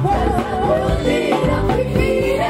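Live gospel music: voices singing over a band with electric bass guitar and drums.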